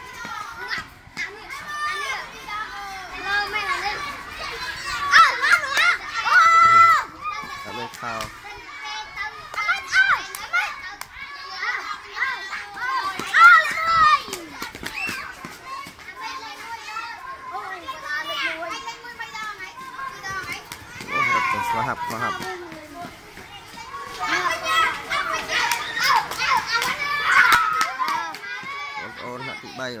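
Crowd of schoolchildren shouting and chattering, many high voices overlapping, with louder swells of shouting several times.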